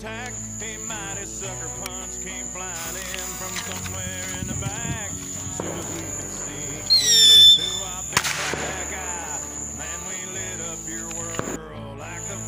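A firework rocket whistles for about half a second around seven seconds in, the loudest sound, then gives a sharp bang about a second later, with a smaller crack near the end. A country song plays throughout.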